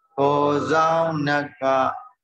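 A Buddhist monk's male voice chanting, drawn-out syllables held on steady pitches in a recitation tone, with a brief break about one and a half seconds in.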